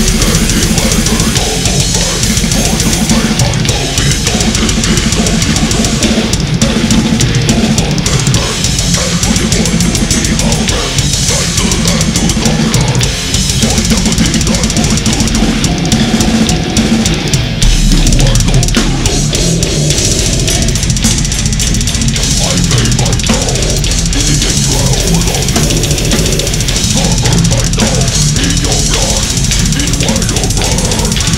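A death metal band playing live, heard from the drum kit: fast drumming with bass drum, snare and cymbals up front in a loud, dense mix. A little past halfway the bass drum's low end gets heavier.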